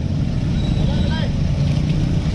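A steady low rumble, with faint talking in the background about a second in.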